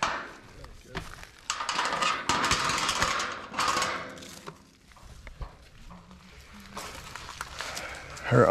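Metal chain clinking and rattling against a steel farm gate and its wooden post as the gate is handled, a run of sharp metallic clicks over the first few seconds, then quieter with a few more clicks.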